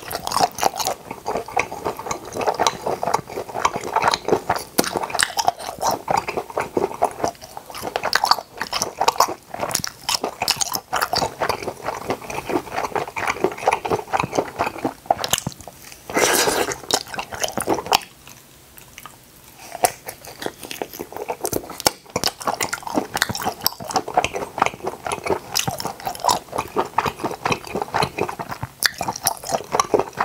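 Close-miked chewing of octopus skewer pieces: wet, rapid smacking and squishing mouth sounds, with a louder bite about sixteen seconds in and a short lull a couple of seconds later.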